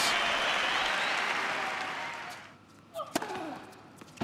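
Crowd noise that dies away over the first two and a half seconds. About three seconds in comes a single sharp crack of a racquet striking a tennis ball, with short shoe squeaks on the hard court around it.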